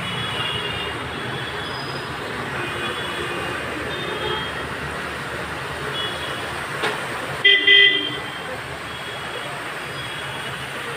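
Motor traffic wading through floodwater: a steady wash of engines and water, with short horn toots here and there. One loud vehicle horn blast comes about three quarters of the way through.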